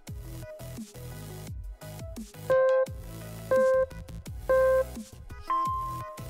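Electronic background music with a steady low beat. Over it a countdown timer beeps three times about a second apart, then gives one longer, higher beep, marking the end of a rest period.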